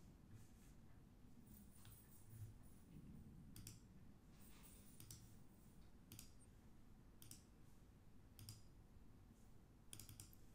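Near silence, broken by a few faint computer mouse clicks spaced about a second apart.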